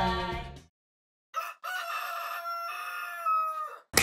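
Rooster crowing, used as a morning wake-up sound effect: a short note, then one long cock-a-doodle-doo lasting about two seconds, dropping slightly in pitch near its end. Music and voices fade out before it begins.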